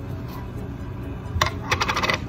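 Plastic screw lid of a jar of Airspun loose face powder being twisted off: a quick run of small sharp clicks near the end.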